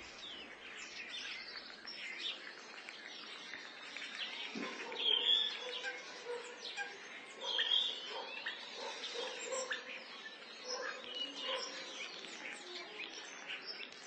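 Birds chirping: many short overlapping chirps and calls, fairly quiet, with a couple of louder calls about five and seven and a half seconds in.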